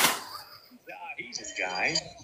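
Faint, muffled voices after a short burst of hiss that fades away in the first moment.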